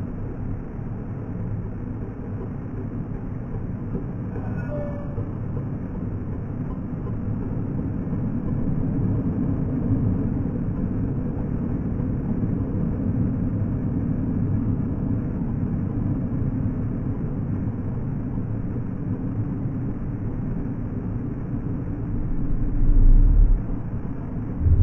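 Steady low rumble of motorcycle traffic and road noise, heard from a motorcycle moving off from a junction among other motorbikes. A brief, louder low buffet comes near the end.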